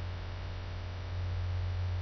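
Steady low electrical mains hum with a faint hiss behind it, picked up by the recording.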